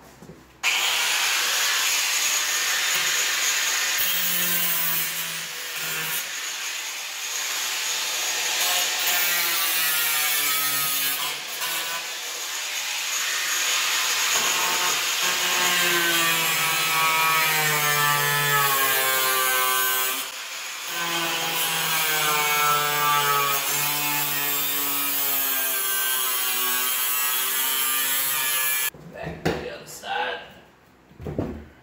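Four-inch angle grinder with a cutoff wheel cutting through the metal of a car door: a loud, sustained whine whose pitch wanders up and down as the disc bites into the cut. It starts about half a second in, eases off briefly about two-thirds of the way through, and stops just before the end.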